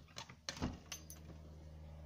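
A white uPVC glazed casement being opened: a few sharp clicks and knocks of the handle and frame in the first second or so, then a steady low hum.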